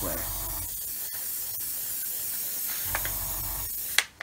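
Gravity-feed airbrush spraying paint, a steady hiss of air and atomised paint that cuts off suddenly at the end as the trigger is released.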